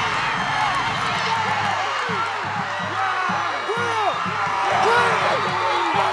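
Football crowd cheering and shouting, many voices at once, after a kickoff-return touchdown.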